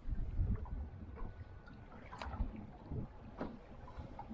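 Wind buffeting the microphone and choppy water lapping against the hull of a small boat grounded on a sandbar, with a few faint knocks.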